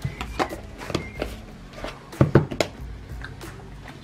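Square plastic tub being closed and handled: its lid pressed and snapped on with a run of sharp clicks and knocks, the loudest cluster a little past halfway, with music underneath.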